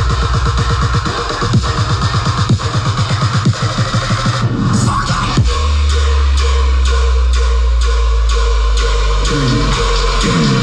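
Loud electronic dance music from a DJ set played through a festival sound system: a fast, stuttering rhythmic build-up that breaks about five seconds in into a long, deep sustained bass note with a steady tick above it.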